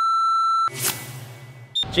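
Electronic intro sound effect: a loud, steady, single-pitched beep held for under a second, then a swish and a low hum, ending with a short high blip.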